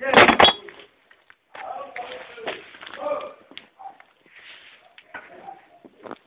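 Steel pressing-tool parts clinking and knocking against the hydraulic lift block of a U445 tractor as they are taken off after pressing in a flanged bushing. There is a loud clank at the start, then scattered metallic clinks and handling knocks.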